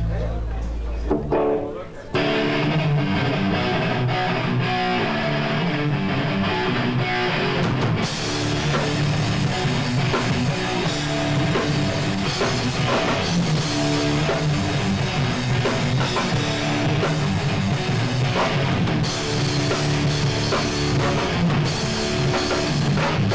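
Hardcore band playing live: distorted electric guitar, bass and drum kit. A low bass note sounds first, the full band comes in about two seconds in, and the cymbals open up from about eight seconds.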